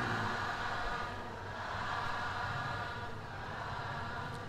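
Steady faint background hiss and low hum of the recording, with no voice.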